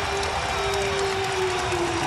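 Basketball arena sound with music: one long held note that slowly sinks in pitch, over steady crowd noise.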